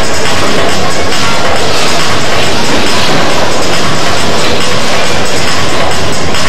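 Loud music mixed with a steady mechanical rattle and clatter from the featherweight combat robots.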